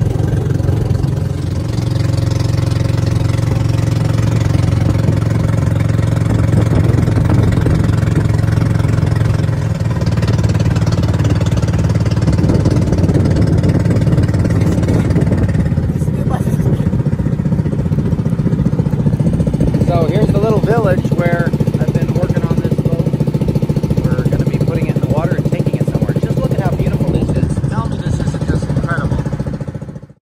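Engine of a small outrigger boat running steadily, a constant low drone that cuts off suddenly at the end.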